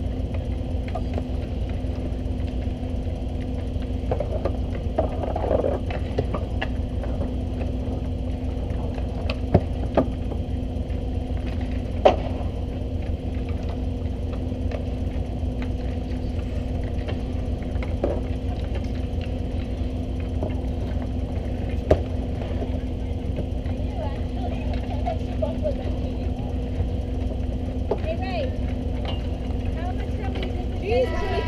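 Ice hockey play on an outdoor rink: several sharp knocks of stick and puck, and faint shouts from players. These sit over a steady low rumble and a constant hum.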